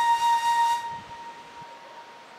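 Background music: a flute holds one long note that fades away about a second in, leaving a faint lingering tone.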